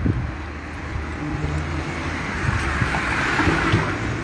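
Road traffic noise: a steady low engine hum, with a car passing about three seconds in.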